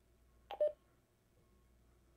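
Handheld DMR radio, an AnyTone 878, keyed up: a sharp click of the push-to-talk button about half a second in, followed at once by a short beep.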